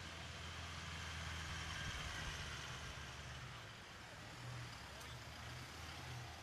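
Cars moving slowly past: a steady low engine hum over an even background hiss.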